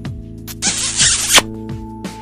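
Background music, cut across about half a second in by a loud rushing hiss of noise that builds for under a second and ends in a sharp hit: a swoosh sound effect for an animated logo.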